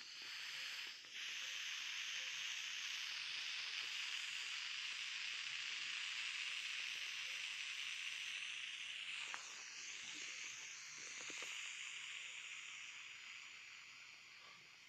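Air hissing steadily out of a small inflatable plastic globe beach ball as a hand squeezes it to deflate it. The hiss breaks briefly about a second in and fades near the end as the ball empties.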